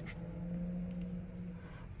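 A faint, steady low hum inside a car cabin that fades out shortly before the end, with a light tap right at the start.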